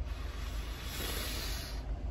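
Steady background noise inside a car cabin: a low rumble with an even hiss over it.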